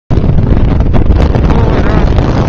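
Strong wind blowing across the microphone: a loud, steady low rumble.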